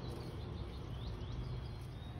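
Steady outdoor background rumble with a few faint, short bird chirps.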